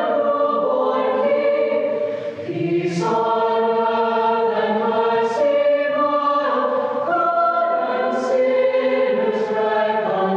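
Mixed-voice high school choir singing sustained chords that change every second or so, with crisp 's' consonants sung together several times.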